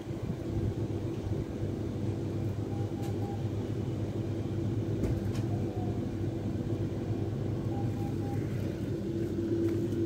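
Regio 2N double-deck electric train standing at a platform with its doors open, its on-board equipment giving a steady hum with a few faint clicks.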